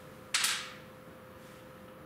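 A single short, sharp noise about a third of a second in, fading within half a second, over a faint steady hum.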